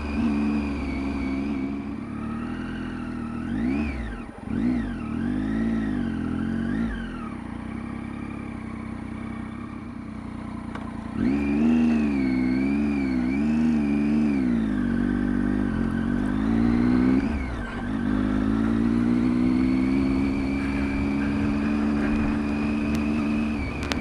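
Triumph Tiger 800 XCx motorcycle's three-cylinder engine under way. Its pitch rises and falls in repeated waves as the throttle is opened and closed, then holds steady over the last several seconds.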